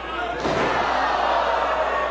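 A wrestler's body slammed onto the wrestling ring mat in a scoop slam: one loud thud about half a second in, followed by a steady wash of noise.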